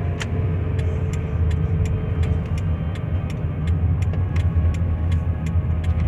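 Car cabin noise while driving: a steady low road-and-engine rumble, with a regular light ticking about three times a second.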